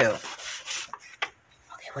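Paper rustling and rubbing as hands handle a folded paper envelope and card stock, with a single short tick a little over a second in.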